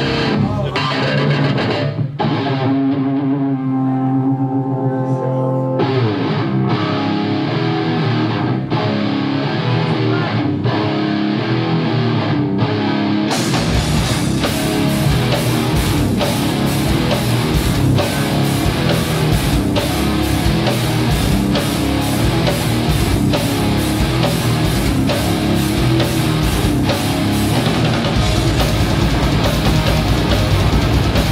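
Thrash metal band playing live. Electric guitar plays the intro riff alone without drums, then the drums and bass crash in with the full band about thirteen seconds in.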